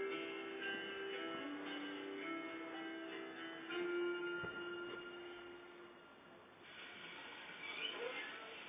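Soft instrumental background music from a television, a few held notes at a time, fading out about six seconds in.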